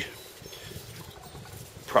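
A pause in a man's speech filled only by faint outdoor background noise. His hands moving sausages on the grill grate make no distinct sound.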